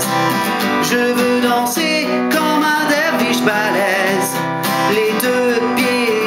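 Acoustic guitar strummed in a steady rhythm, accompanying a sung melody.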